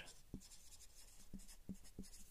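Faint strokes of a marker writing on a whiteboard, with a few soft ticks as the pen tip meets and leaves the board.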